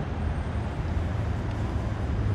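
Steady low rumble with an even background hiss, unchanging throughout.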